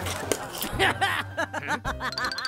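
Cartoon character voices making short wordless sounds, a quick string of chirpy syllables, over a low held music note.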